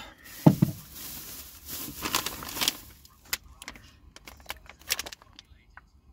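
Food packets and a glass jar being handled and rummaged through: irregular rustling with several light clicks and knocks.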